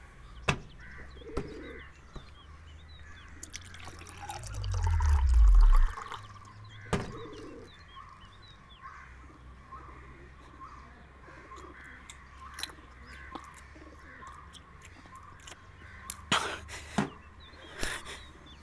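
Small birds chirping steadily in the background, with a few sharp clicks and knocks. A loud low swell builds about four seconds in and cuts off suddenly two seconds later.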